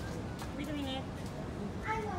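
A child's voice calling out in a drawn-out, wordless tone, once from about half a second in and again briefly just before the end, over steady background noise.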